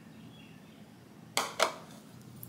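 A bowl set down on a countertop: two quick knocks about a second and a half in.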